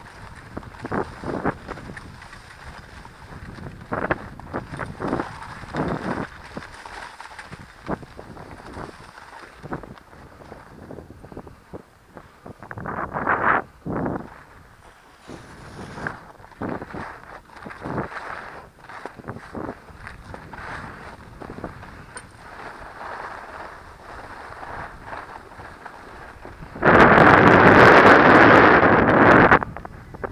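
Skis scraping and hissing over snow in a run of uneven surges as the skier turns down the slope. Near the end, a few seconds of loud wind rushing over the microphone.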